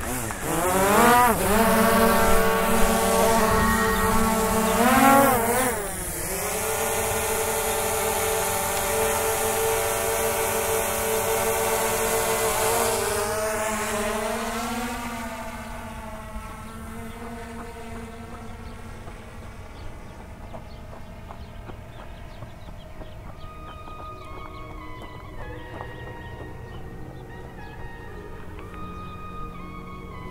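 DJI Mavic Air 2 quadcopter's propellers spinning up and humming at take-off, the pitch rising sharply about a second in and again near five seconds, holding steady, then dropping and fading away as the drone climbs off. Quiet background music takes over for the second half.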